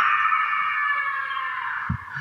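Creaking door sound effect: a long, high creak that slowly fades over about two seconds, signalling a door swinging open.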